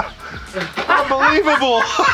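Men's voices exclaiming and laughing, loudest in the second half, over background music with a steady beat.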